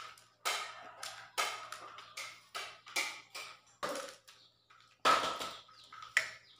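A person chewing a mouthful of food close to the microphone, wet mouth sounds about twice a second, easing off, then one louder burst of mouth noise near the end.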